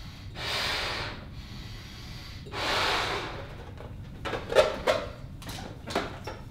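A person blowing up a rubber balloon: two long breaths into it, each about a second, then several sharp squeaks and rubbing sounds of the rubber being handled at the neck in the second half, the loudest about four and a half seconds in.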